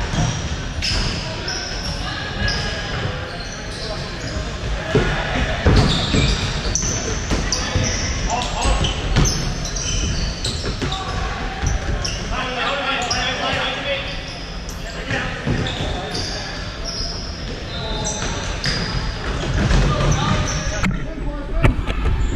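Futsal ball being kicked and bouncing off a hardwood hall floor, with thuds scattered through and many short high-pitched sneaker squeaks as players run and turn, echoing in a large hall.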